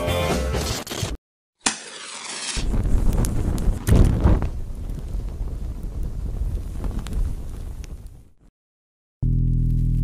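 A country song with acoustic guitar cuts off about a second in. After a brief gap, a sharp hiss leads into a loud, rumbling, explosion-like blast sound effect that fades out over several seconds. Near the end, a low, steady droning chord begins.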